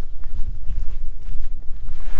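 Footsteps of a hiker walking on a dirt trail, a few faint steps, under a steady low wind rumble on the microphone.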